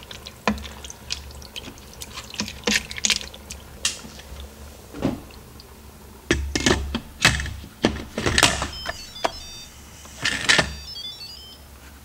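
A wooden spatula scraping and knocking around a stainless steel Instant Pot inner pot as pasta and tomatoes are stirred, then the pressure cooker lid set on and turned to lock, with clunks and clicks. Near the end a short jingle of high electronic beeps plays.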